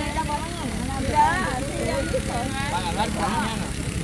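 Several people's voices in casual group conversation, over a steady low rumble.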